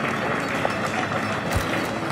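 Audience applauding: dense hand-clapping from a roomful of people, with a single low thump near the end.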